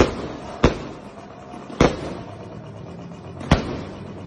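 Fireworks exploding: four sharp bangs at uneven intervals, about half a second to nearly two seconds apart, each trailing off briefly.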